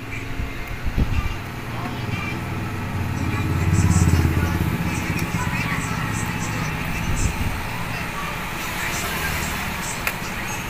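A low vehicle rumble swells to a peak about four seconds in and then fades, over steady background noise.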